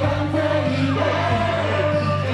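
Live pop song: a male vocalist sings a melodic line through a handheld microphone over amplified backing music, with a steady bass note beneath.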